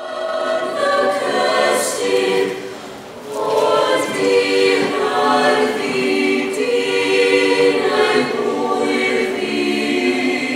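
Mixed choir of women's and men's voices singing a cappella in held chords, the sound dipping briefly about three seconds in before swelling again.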